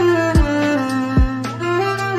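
Instrumental cello cover of a pop song: a sustained bowed melody over a backing track, with two deep kick-drum hits.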